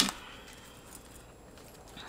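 Quiet room with a faint, soft rustle of oracle cards being handled and drawn from the deck.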